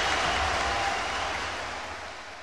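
Audience applause, fading out steadily.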